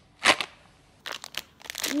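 Clear plastic squishy packaging being pulled open by hand: one sharp crack about a quarter second in, then a few short crinkles of plastic in the second half.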